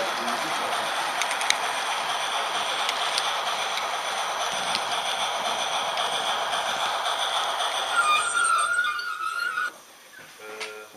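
Running noise of an H0 model train, heard from a camera riding on it: a steady rolling and motor noise with occasional sharp clicks from rail joints and turnouts. A squeal sets in about eight seconds in as the train slows, and the noise cuts off suddenly just before the end as it stops.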